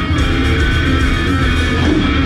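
Heavy rock music led by electric guitar over a steady bass.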